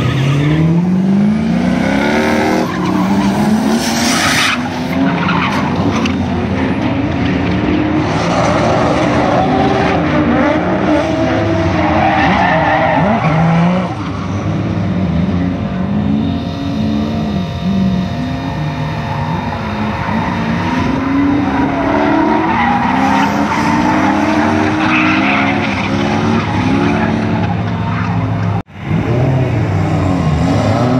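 A drift car's engine revving up and down again and again while its tyres squeal and skid through a slide. The sound breaks off briefly near the end.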